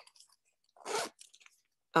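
A short crunchy rustle about a second in as a fabric zipper pouch of pencils and erasers is handled, followed by a couple of faint ticks.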